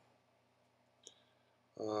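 A pause in a man's talk: faint room tone with a single short click about a second in, then the man starts saying "um" near the end.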